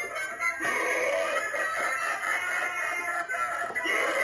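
Clown Halloween animatronic playing its built-in music soundtrack as it activates.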